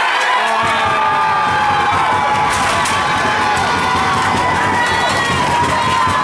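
Hockey crowd and players cheering and yelling, many voices at once, rising sharply at the start and holding loud and steady, fuller from about half a second in.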